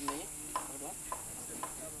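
Faint light clicks of metal, about two a second, as the support rods on the stand of a parabolic solar cooker are worked by hand, over a steady hiss.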